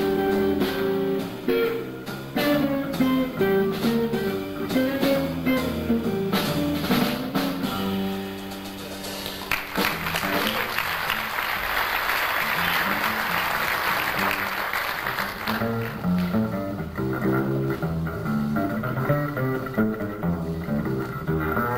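A jazz trio plays live: a hollow-body electric guitar over double bass and drums. About halfway through, the guitar stops and the audience applauds for several seconds. The double bass plays on into a solo.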